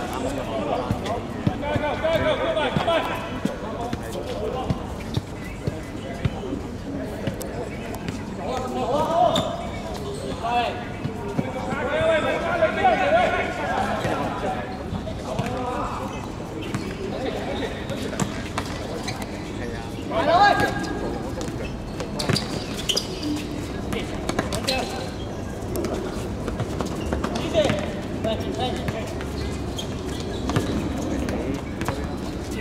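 Footballers calling and shouting to one another on the court, loudest about twelve seconds in and again around twenty seconds. Under the voices, a football is kicked and bounces on the hard court surface in short knocks.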